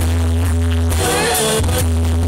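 A banda sinaloense brass band playing live: horn and reed lines over a heavy, steady low bass line, recorded loud on a phone in the crowd.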